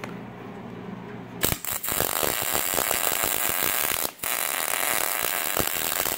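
Wire-feed (MIG) welder tack-welding a steel barb onto twisted 3/8 in steel bar: a loud, steady arc crackle starts about a second and a half in, stops for a moment about four seconds in, then picks up again. Before the arc strikes there is only a low steady hum.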